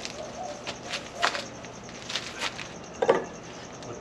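Dry tinder and fire materials being handled on a wooden bench: scattered light rustles and clicks, with sharper knocks about a second and a quarter in and about three seconds in. A bird calls faintly in the background.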